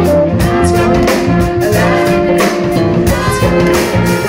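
A live band playing a groove in a jam, with drums, guitar and violin, and a woman singing into a microphone over it.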